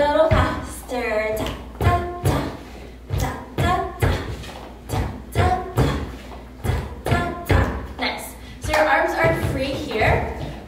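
A woman's voice vocalizing the rhythm in short sung syllables, without words, while sneakers step and thud on a wooden studio floor about twice a second.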